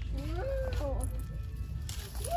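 A young child's high voice making a couple of short sliding, whiny sounds in the first second, then quieter.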